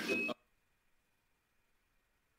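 The tail of a man's word cut off about a third of a second in, then dead silence: the audio drops out completely.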